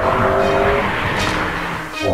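Sports car going by at speed on a race track: a steady engine note in the first second, then a rush of tyre and road noise that swells and fades.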